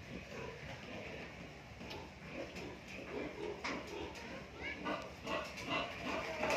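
Domestic pigs, a sow with her suckling piglets, grunting in short irregular calls that come more often in the second half.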